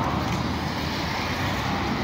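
Steady road traffic noise from passing cars, with no distinct events.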